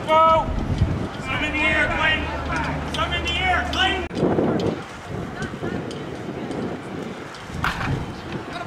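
Several voices shouting and calling out indistinctly, loudest in the first four seconds, then dying down to quieter background chatter.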